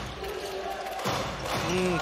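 A basketball being dribbled on a hardwood court in an arena, with the clearest bounce about a second in.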